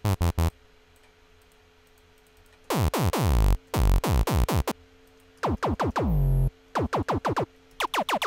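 Serum software synthesizer playing short synthetic percussion hits, each dropping quickly in pitch, while the patch is being designed. The hits come in uneven clusters with a pause in between, and there is a longer falling sweep around three seconds in.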